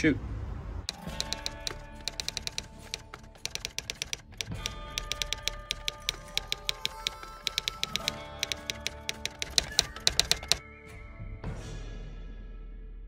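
Typewriter key-clicking sound effect, rapid and irregular, over background music with held tones; the clicking stops about a second and a half before the end.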